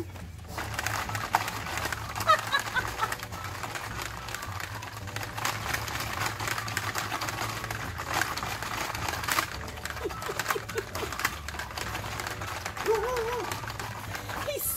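Plastic Hungry Hungry Hippos game clacking and rattling as its hippo levers are hammered rapidly by hand, a dense, irregular run of sharp clicks.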